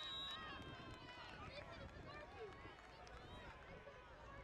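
Players and spectators at a youth flag football game shouting and calling out, many voices overlapping, some held as long cries. A brief high steady tone sounds right at the start.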